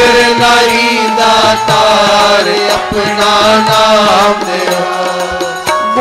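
Sikh devotional kirtan: sung chant of a Gurbani refrain with musical accompaniment, held and melodic throughout.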